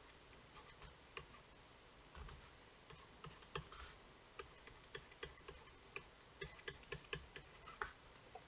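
Faint, irregular clicks of a stylus tapping on a tablet screen while drawing, coming in quicker runs in the second half as short pen strokes are made.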